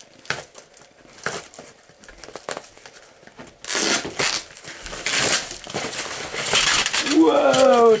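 A small cardboard box being opened by hand: scattered scuffs and taps of the flaps, then from about three and a half seconds in a longer, louder stretch of crinkling and tearing as the packaging inside is pulled open.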